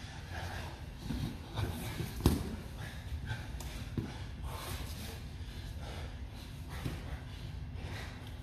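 Heavy breathing and grunts of two grapplers in a no-gi jiu-jitsu roll, with bodies shifting on the foam mats. There is one sharp thud about two seconds in and a smaller one at four seconds.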